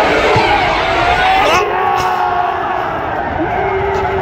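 Football stadium crowd cheering a home goal, with loud, long held shouts from many voices.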